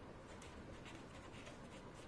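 Faint scratching of a marker pen writing a word by hand on paper.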